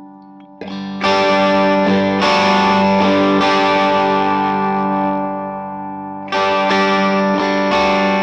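Electric guitar played through a Fender 6G6-B Blonde Bassman copy head fitted with new-old-stock tubes. A few light strums come about half a second in, then full chords are struck and left to ring, struck again several times, with a fresh loud chord about six seconds in.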